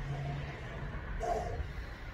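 A pause in the talking: a steady low hum over room noise, fading about half a second in, with a brief faint vocal sound about a second in.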